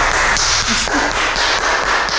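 Quick, continuous hand clapping, a run of sharp claps.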